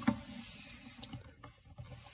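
Faint handling noise of a plastic action figure being moved by hand, with a few light clicks and taps over a soft hiss.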